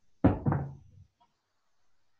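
A knock: two quick hits about a quarter second apart, the first the loudest, fading out within about a second.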